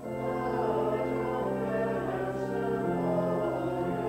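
Hymn singing by many voices with organ accompaniment, the organ's held chords under the sung melody; the music picks up again right at the start after a brief dip.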